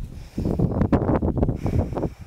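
Loud, irregular rumbling and rustling noise on the microphone, with a few crackles, lasting about a second and a half.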